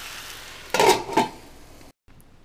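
Stir fry sizzling in a frying pan, then two loud clanks of metal cookware about a second in, the first ringing briefly.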